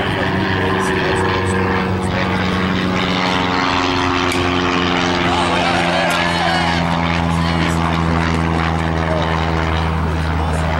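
A steady, loud engine drone with a low hum beneath it, its pitch shifting slightly a couple of times. Faint voices are heard over it.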